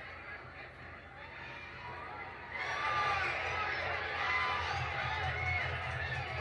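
Crowd of children shouting and chattering, played back through a TV's speakers. It starts suddenly about two and a half seconds in, over a steady low hum.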